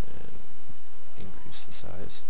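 Steady low rumble of background noise from the recording microphone, with a quick run of sharp computer-mouse clicks about a second and a half in.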